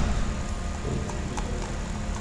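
Steady low hum of the recording setup, with a few faint, sparse clicks from a computer mouse.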